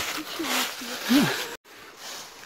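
Footsteps rustling through dry fallen leaves, with a few faint, short voice sounds. The sound cuts out abruptly about one and a half seconds in, leaving a fainter rustling hiss.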